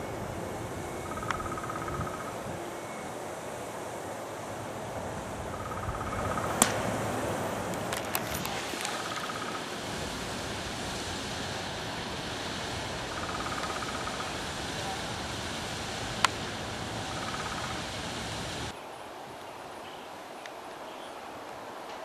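Outdoor ambience: a steady hiss with a few sharp clicks, the loudest about six and a half seconds in, and a short high chirp that comes back every few seconds. The hiss drops away sharply near the end.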